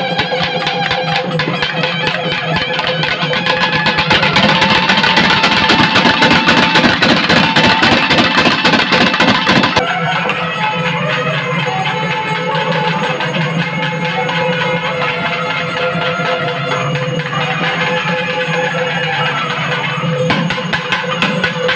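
Naiyandi melam band: nadaswaram reed pipe playing a melody over fast thavil drumming. The drumming grows louder and denser from about four seconds in. Near the middle the sound changes abruptly to lighter drumming under a clearer held melody.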